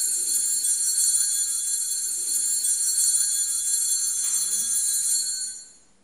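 Altar bells ringing steadily with a bright, high, many-toned jingle, marking the elevation at the consecration of the Mass. The ringing dies away shortly before the end.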